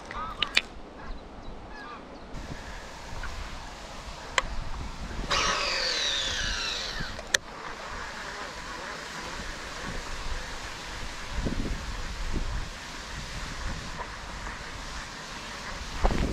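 Wind buffeting the microphone with a steady low rumble, broken by a few sharp clicks. About five seconds in comes a two-second burst of high, squeaky chirps.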